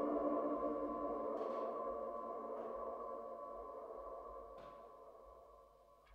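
The song's last chord ringing out on the band's instruments, a steady cluster of sustained tones fading evenly away toward silence. Two faint brief noises come through about a second and a half in and again near the end.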